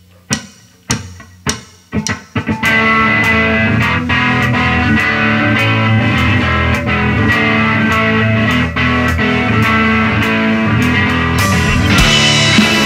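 Rock band starting a song: a few sharp clicks about twice a second, then about two and a half seconds in electric guitars, electric bass and a drum kit come in together and play on steadily and loud.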